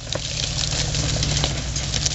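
Jeep Cherokee XJ's 4.0-litre inline-six running steadily at low revs as the Jeep crawls through rocks and brush, with scattered short clicks over it.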